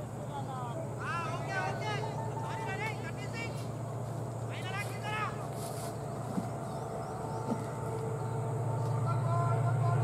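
Brief distant shouts and calls from players, heard over a steady low hum that grows louder near the end.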